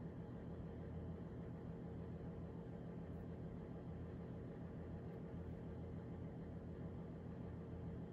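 Quiet room tone: a steady low hum with no distinct sounds.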